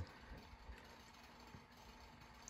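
Near silence: faint room tone with low hum.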